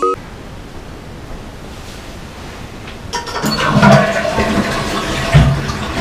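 Toilet flushing: a steady rush of water that grows louder and gurgles from about three seconds in.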